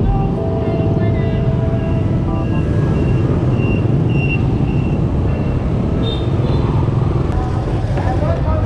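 Motor scooter ridden through busy street traffic: steady engine and road noise under a dense, fluttering wind rumble on the microphone.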